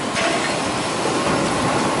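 Bottling-line machinery running: a steady mechanical clatter of conveyor and packed PET water bottles, with a steady whine that comes in just after the start.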